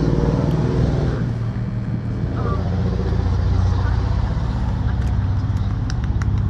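A steady low rumble with voices in the first second, and the first few sharp claps near the end.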